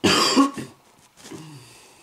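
A person clearing their throat: a loud, harsh burst lasting about half a second, then a shorter, quieter throaty sound falling in pitch a little over a second in.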